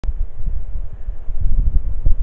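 Wind buffeting the microphone: a loud, gusty low rumble that rises and falls unevenly, with a brief click right at the start.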